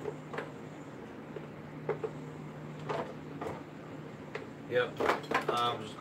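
A few short, sharp knocks and clatters of a stainless-steel deep fryer being handled, spaced about a second apart, over a steady low hum. A man starts talking near the end.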